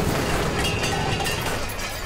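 Tail of an explosion sound effect: a steady noisy rush that slowly fades away.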